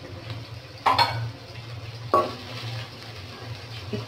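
Sliced onions frying in oil in an aluminium karahi with a steady sizzle, and a wooden spatula knocking against the pan twice as they are stirred, about one and two seconds in.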